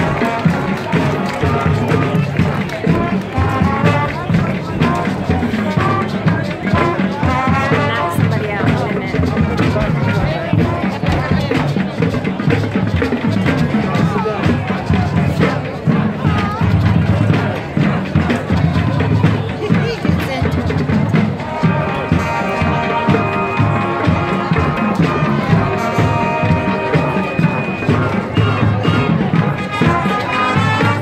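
High school marching band playing on the field, brass and drums together, with spectators' voices close to the microphone. Sustained brass chords stand out over the drums in the last third.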